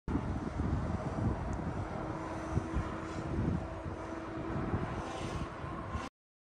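Outdoor ambience with wind buffeting the microphone in an irregular low rumble, over a faint steady engine-like hum. It cuts off suddenly at the end.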